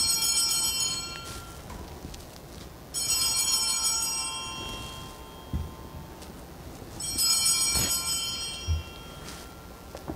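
Sanctus bells, a cluster of small altar bells giving several high tones at once, rung three times about three and a half seconds apart, each ring dying away over a second or two. They mark the consecration of the wine after the words of institution.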